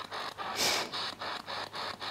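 Spirit box sweeping through radio stations: a rapid, evenly spaced chopping of static with a louder burst of hiss about half a second in.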